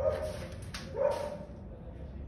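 Two short, loud animal calls about a second apart, over a steady low hum.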